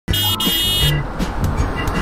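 Cartoon car horn sound effect honking twice in the first second, followed by a noisier car driving sound effect with low rumbling tones.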